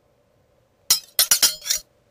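A quick run of sharp, ringing clinks, about five strikes packed into under a second near the middle, then gone.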